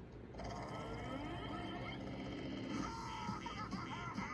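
Cartoon soundtrack played on a computer and recorded off its speakers: a character's deep growling vocal sound, held for about a second, followed by quick high-pitched cartoon voice sounds near the end.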